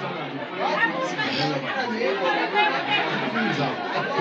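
Several people talking over one another at once, a steady babble of overlapping voices with no one voice standing out.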